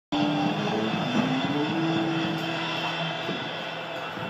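Steady background noise of an indoor climbing gym, a dense hum with a few held tones in it, cutting in abruptly and slowly getting quieter.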